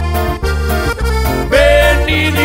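Live norteño-sierreño band playing an instrumental passage of a slow ballad: button accordion melody over a walking bass line, with a long held accordion note coming in about one and a half seconds in.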